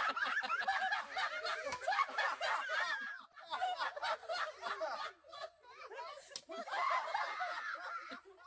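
Onlookers laughing and snickering, with a little talk mixed in; the laughter eases off in the middle and picks up again near the end.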